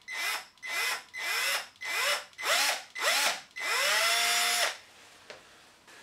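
Small drill run in reverse at slow speed with a left-handed drill bit on a stripped screw. The trigger is pulsed in six short bursts, each rising in pitch as the motor spins up, then held for one longer run of about a second. The bit is biting into the screw and backing it out.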